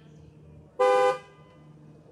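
A single short car horn toot, about half a second long, about a second in; it is loud and held at a steady pitch.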